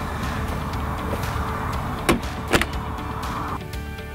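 Plastic Thetford toilet cassette sliding in its caravan hatch, a steady scraping, with two sharp clicks about half a second apart near the middle. The scraping stops shortly before the end.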